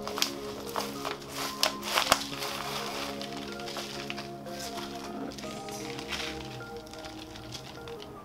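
Soft background music of slow, sustained chords. In the first two seconds or so, a few crackles and taps come from potting soil and a plant pot being handled as a plant is worked out of its pot.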